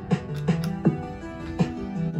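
Electronic music from synthesizers and a Korg Volca Sample drum machine running in sync off MIDI clock: a steady beat of about three hits a second over sustained synth notes.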